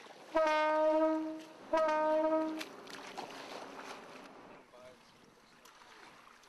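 A boat horn gives two long blasts, each about a second long, the second following right after the first.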